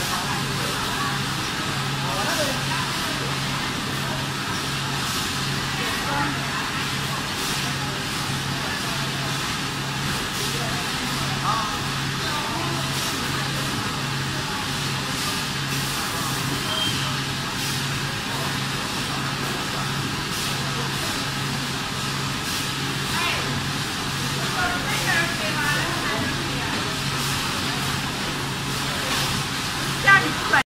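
Steady factory machinery noise with a low hum that pulses on and off evenly, more than once a second, around a high-frequency PVC bag welding machine.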